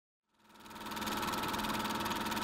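Film projector running: a fast, even mechanical clatter over a steady hum, fading in over the first second.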